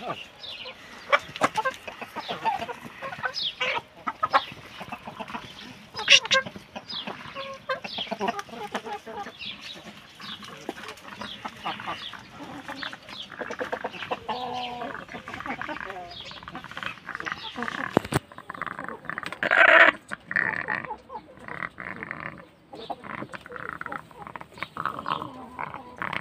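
Domestic chickens clucking, many short separate calls from a mixed flock of hens and roosters. A sharp click comes about eighteen seconds in, followed by a louder burst of calls.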